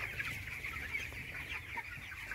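A large flock of about 25-day-old broiler chicks peeping together, a continuous chorus of many overlapping short, high chirps.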